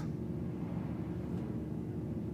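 Quiet room tone: a steady low hum with no distinct event.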